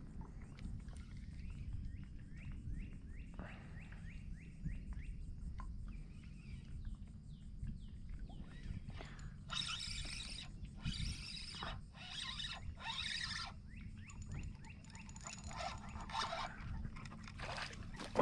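Outdoor ambience of a steady low rumble, like wind on the microphone, with a bird chirping in quick repeated notes for several seconds. Later come a handful of short rasping bursts, about a second apart.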